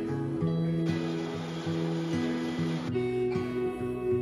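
Background music with held notes that change every half second or so.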